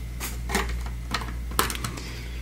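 LEGO bricks and model parts being handled, giving several light plastic clicks and clatters, more of them near the end.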